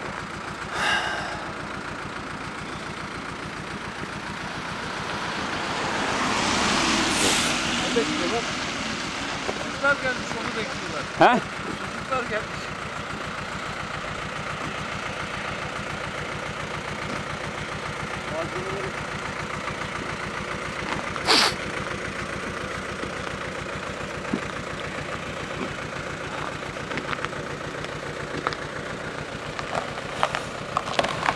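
A road vehicle passing by, its tyre and engine noise swelling and fading over a few seconds, over steady roadside background noise. A single sharp knock comes about twenty seconds in.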